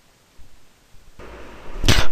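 Near silence, then a steady microphone hiss comes in just past a second. Near the end a sharp pop is heard as a voice begins.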